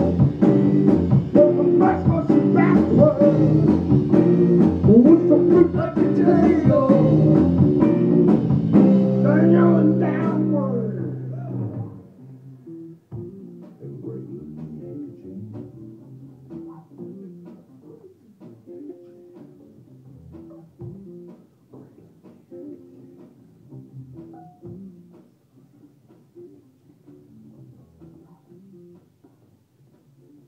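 Live rock band with electric bass, electric guitar, drum kit and sung vocals, playing loud and full for about the first ten seconds. It then drops away to a much quieter, sparser passage that fades further toward the end.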